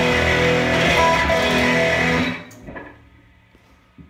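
Electric guitar chord strummed and left ringing for about two seconds, then cut off sharply.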